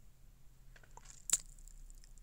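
A single short, sharp click a little past halfway through a quiet pause, with a few faint small noises just before it over a low steady hum.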